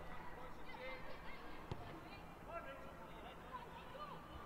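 Faint ambient sound of a live football match: distant voices calling across the pitch and stands, with one short knock a little before halfway through.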